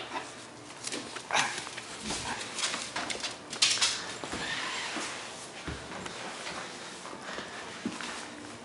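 Corgi puppy vocalizing and scuffling while tugging on a stuffed toy corgi, mixed with rustling and knocks from handling, in irregular bursts that are loudest about three and a half seconds in.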